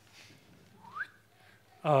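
A single short, faint squeak that rises in pitch like a brief whistle, about a second in, against quiet room tone.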